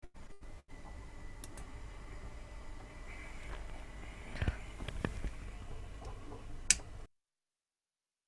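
Faint room noise from a live-stream microphone with no speech, broken by brief dropouts near the start and a few sharp clicks, then the audio cuts out to dead silence about seven seconds in. The dropouts belong to a stream whose sound keeps cutting, which the teacher blames on the DSLR camera used as a webcam.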